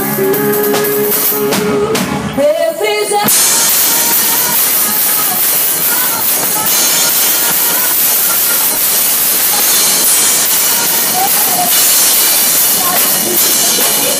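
Live band playing loud under a woman singing; about three seconds in, the singing drops away and a dense, even hiss of drum-kit cymbals being played hard covers everything else.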